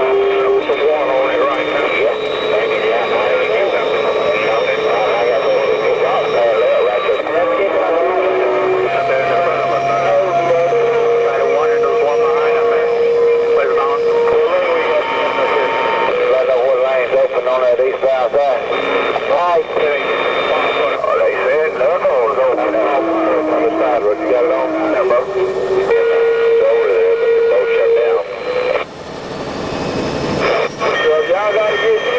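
CB radio chatter: several garbled voices talking over one another, with steady whistling tones that jump in pitch every few seconds as transmissions overlap. It cuts out briefly near the end.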